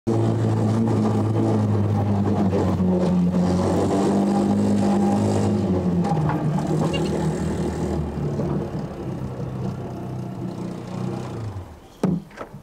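Motorcycle-and-sidecar engine running steadily, dropping in pitch about halfway through as it slows, then fading as it pulls up, and cut off just before the end.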